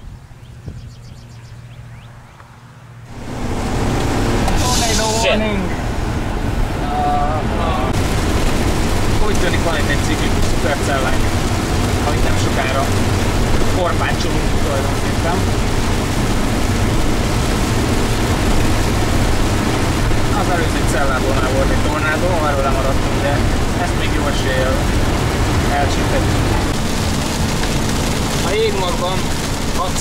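Steady road and engine noise inside a moving car, starting suddenly about three seconds in, with indistinct voices talking over it.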